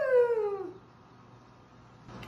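A single drawn-out vocal call, about a second long, that rises and then falls in pitch and ends under a second in. It is followed by near silence.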